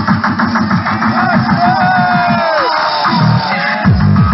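Tekno played loud through a free-party sound system: a fast run of distorted kick drums under a pitch-shifted vocal sample. The kicks break off for about a second near the end and come back just before it closes.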